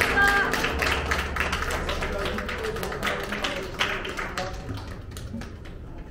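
A violin's last held note ends just after the start, then audience applause that gradually fades.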